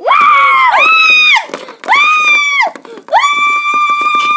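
A girl screaming in a high pitch, four long shrieks in a row, the last held longest, as a toy character's jump-scare fright.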